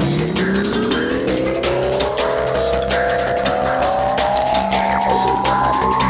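Electronic psytrance music: a fast, even hi-hat pattern over a synth tone that glides slowly and steadily upward in pitch, a build-up riser.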